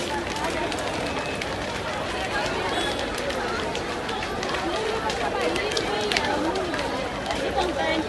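Crowd of many people talking and calling out over one another as they walk along, with scattered footsteps.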